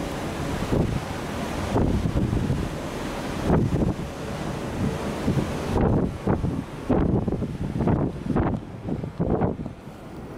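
Wind buffeting the camera microphone in irregular gusts, a rough low rumble that swells and drops unevenly.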